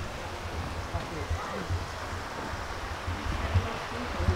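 Outdoor garden ambience: faint, indistinct chatter of other people over an uneven low rumble on the microphone.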